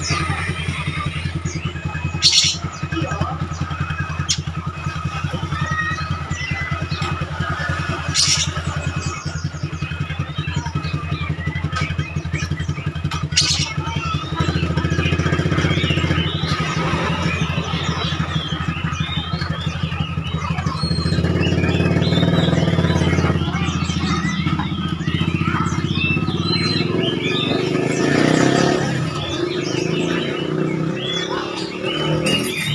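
A motorcycle engine running steadily, a low drone that grows somewhat louder about twenty seconds in. Over it an oriental magpie-robin gives short chirps and song phrases, busier in the second half, with a few sharp clicks in the first half.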